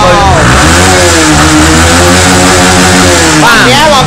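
Motorcycle engine revving: the pitch climbs in the first half second, holds at a steady raised speed for about three seconds, then drops back.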